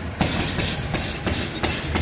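Boxing gloves punching a hanging heavy bag: a quick string of about six sharp thuds, roughly three a second.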